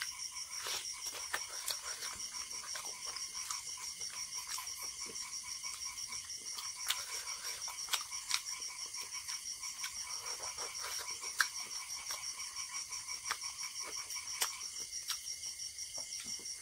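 A steady, high-pitched chorus of calling frogs and insects, pulsing evenly about four or five times a second, with scattered sharp wet clicks and smacks of chewing and eating by hand over it.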